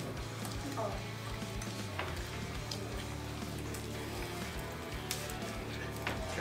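Background music with faint, indistinct voices in the room.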